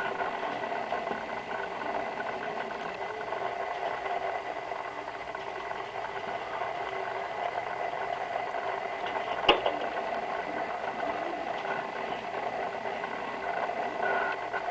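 Small electric motor and gear train inside a vintage Hamm's Beer motion sign running steadily, a continuous whirring rattle with a faint steady tone, as it turns the sign's changing picture panels. One sharp click comes about nine and a half seconds in.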